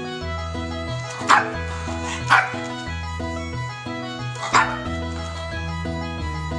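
Shih tzu giving three short barks, the first two a second apart and the third after a longer pause, over continuous background music.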